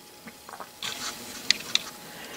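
Hands handling small metal engine parts: light rubbing and rustling, then two small clicks about a quarter second apart near the end.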